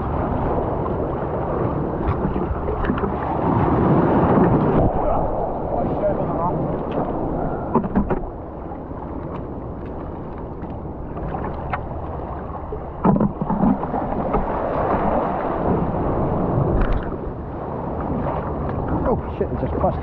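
Shallow sea water sloshing and washing around a wader's legs and a mussel-covered rock, with wind on the microphone. The surging swells louder about four seconds in and again in the second half, with a few sharp knocks.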